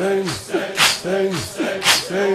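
Male voices chanting a Shia nauha in Arabic: a rhythmic vocal phrase that repeats about every second, its pitch falling, with a short sharp hiss-like accent about once a second.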